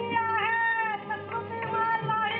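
A high voice singing a slow melody, held notes bending up and down in pitch, over a steady low hum.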